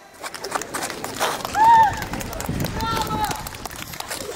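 Open-air murmur of people's voices with scattered light clicks, broken by two short, high-pitched vocal calls, the first of them the loudest.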